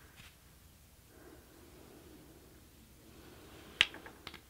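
Quiet handling at an Ashford rigid heddle loom: a stick shuttle with yarn slides softly through the warp threads, then a single sharp wooden click near the end as the shuttle or heddle knocks against the loom.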